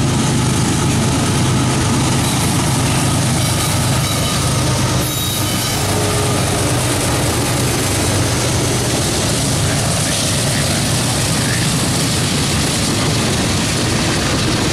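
GE diesel-electric road locomotives pass close at track speed, their engines running loud and steady with a low drone. Then the freight cars roll by, wheels running on the rails.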